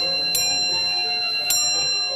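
A clock bell striking twice, about a second apart, each stroke ringing on so that the tones overlap.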